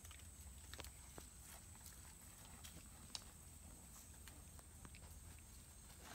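Near silence: faint outdoor ambience with a steady faint high hiss and a few soft scattered clicks, one slightly louder about three seconds in.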